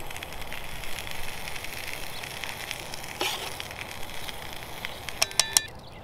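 Pancake batter sizzling in a hot pan over a crackling wood fire. Near the end come three sharp clinks with a metallic ring.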